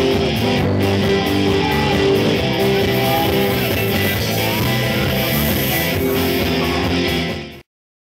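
Live rock band playing, with electric guitar and bass to the fore and no singing. The music dies away quickly near the end and cuts to silence.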